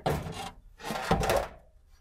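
Two rough rubbing, scraping noises, each about half a second long and about a second apart.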